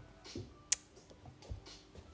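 Embroidery needle and thread being pulled through fabric stretched in a hoop: two faint rasps of thread through the cloth and one sharp click about two-thirds of a second in.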